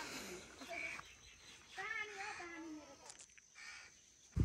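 A crow cawing outdoors, a few separate calls.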